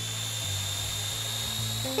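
A small motor's steady high-pitched whirring over background music with a low bass line.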